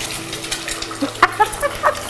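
Fried eggs sizzling in a frying pan, a steady hiss, with a woman laughing in short bursts from about a second in.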